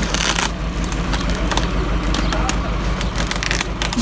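Bubble wrap around a solar panel rustling and crackling as it is handled and pulled open, with a brief louder crinkle just after the start.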